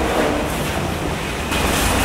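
Steady low rumble with a faint hiss of background noise between the spoken words.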